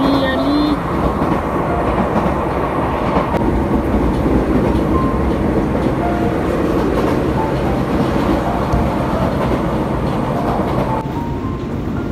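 A train running along the rails, heard from inside the carriage as a steady, loud rumble. The level drops somewhat about a second before the end.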